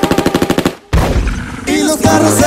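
A rapid burst of machine-gun fire sound effect, about a dozen shots a second for under a second, dropped into a break in a Latin remix, then a short silence and a low rumbling noise before the music comes back in near the end.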